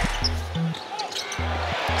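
A basketball being dribbled on a hardwood court, under background music with a pulsing bass line.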